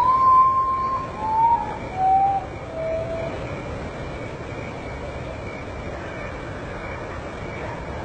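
Common potoo singing: four whistled notes, each lower than the one before, the first held longest, over in about three and a half seconds.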